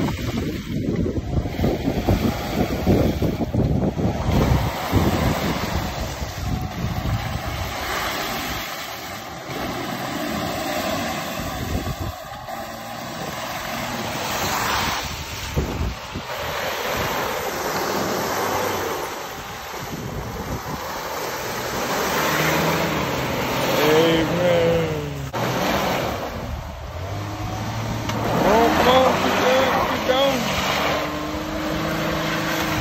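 Small SUV's engine revving hard as its front wheels spin and churn through deep mud and water, splashing. Later the engine note rises and falls as the wheels find grip and the car pulls free, with excited whoops over it.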